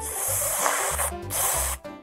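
Edited-in sparkle sound effect: a bright hiss lasting about a second, then a second shorter hiss, over cheerful background music.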